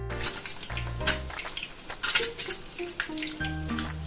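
Boiled eggs sizzling as they shallow-fry in oil in a nonstick pan, with irregular crackles and a wooden spatula pushing them around. Soft background music with held notes plays underneath.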